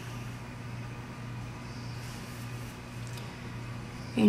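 Quiet room tone: a steady low hum with faint hiss and no distinct event.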